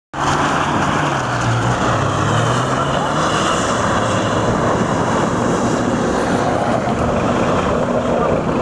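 Off-road 4x4's engine running hard as it drives through a muddy, water-filled puddle, with water and mud splashing. The engine note is clear for the first three seconds as it passes close, then gives way to a steady rush of splashing and engine noise as it moves off.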